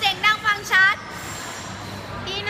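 Young women's very high-pitched voices: three short squealing calls in the first second, then a lull with only background noise.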